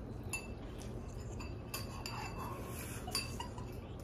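Forks clinking against ceramic bowls as several people eat noodles: a handful of short, sharp clinks that ring briefly, spread through the moment.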